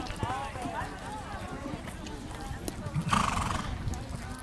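Horse cantering on arena dirt, its hoofbeats heard under spectators' voices. About three seconds in comes a short, loud whinny.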